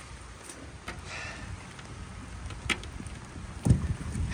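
Steady rain hiss with a few light clicks and a dull bump near the end.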